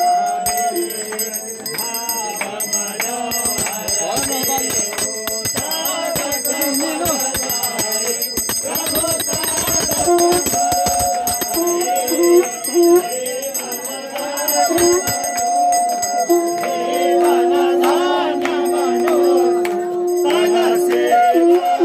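Ritual bells ringing on and on over devotional music, with a held mid-pitched tone sounding in short pieces and then as one long stretch near the end.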